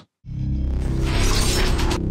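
Transition music sting with a crashing sound effect, cutting in about a quarter second in after a brief silence and swelling through the rest.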